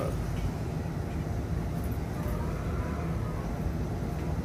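Steady low rumble of background noise, with faint voices in the background.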